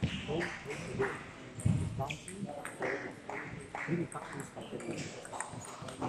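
People talking in a large sports hall, with a few sharp table tennis ball clicks from play on the tables.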